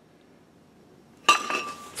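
A cast-iron vented brake rotor set down on a workbench: a sharp metallic clink about a second and a quarter in that rings briefly on one tone, then a second knock at the very end.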